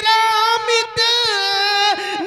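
A man singing a naat through a microphone in a high, sustained voice. He holds long notes that bend and glide in pitch, with no instruments.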